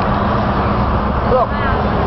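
Steady roar of road traffic on the highway below the overpass, with a faint hum, and distant voices faintly heard through it.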